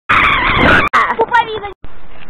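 A loud, harsh burst of noise for under a second, then a girl's high voice briefly, cut off suddenly.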